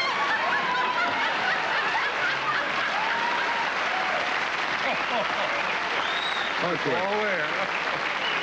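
Studio audience laughing and applauding in a steady wash of sound, with a few louder individual laughs near the end.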